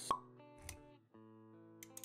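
Intro music of sustained tones with a sharp pop sound effect right at the start and a softer low thud about two-thirds of a second in; the music cuts out for a moment near the middle, then resumes.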